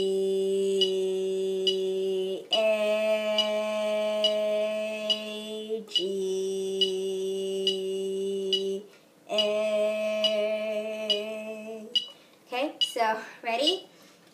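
Concert flute holding long beginner notes: G, then A, then G, then A, each held for four beats, over a metronome clicking about 70 times a minute. The playing stops about twelve seconds in.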